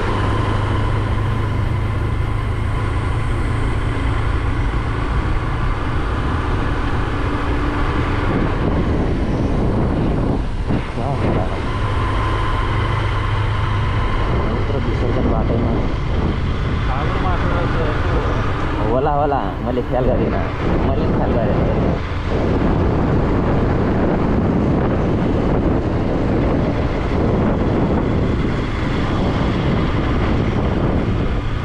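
Motorcycle engine running while riding, under a steady rush of wind and road noise; the engine note holds steady, then wavers and shifts through the middle.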